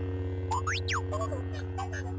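Lightsaber-style sound effect: a steady low electric hum from the lit blade, with a quick swooping glide that falls and rises again about half a second in, then a few light clicks.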